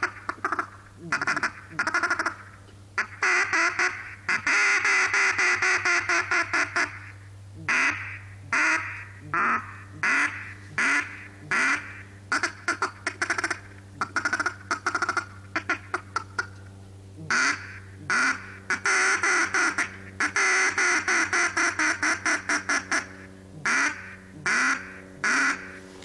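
Wooden Canada goose call blown by mouth, sounding strings of short honks and clucks, with two longer runs of rapid, continuous calling.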